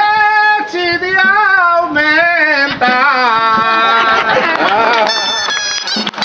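A single voice singing an albà, the traditional Valencian street song, in long ornamented, wavering phrases. About five seconds in, a dolçaina, the Valencian shawm, starts playing its melody.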